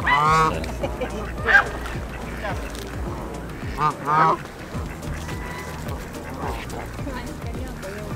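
Canada geese honking as they crowd in to be fed: a burst of loud honks at the start, another about a second and a half in, and a pair around four seconds in.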